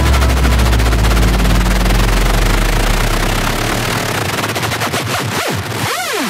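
Big room EDM breakdown: a long, low bass note fades out over a few seconds under a wash of white noise. Near the end, several falling pitch sweeps come in as transition effects.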